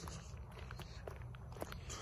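Footsteps of Nike Air Monarch sneakers walking on a concrete sidewalk, with scattered small clicks and scuffs as the soles meet the pavement.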